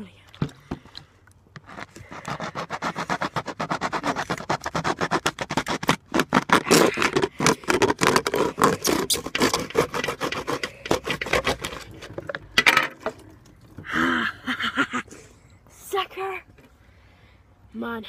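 A knife sawing through a crushed plastic drinks bottle to cut it in half: a fast, rapid run of short crackling, scraping strokes lasting about ten seconds. A few brief vocal sounds follow near the end.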